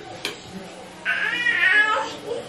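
Baby in a high chair letting out one high-pitched squeal about a second in, lasting about a second. A short click comes just before.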